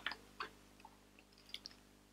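A few faint, scattered clicks of a Revlon eyelash curler being squeezed and released to test its pinch.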